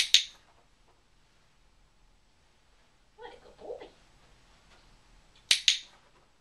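Dog-training box clicker clicked twice, each click a quick double snap of press and release, once at the start and again about five and a half seconds in, marking the puppy's behaviour for a treat. Between the clicks, a short high-pitched vocal sound.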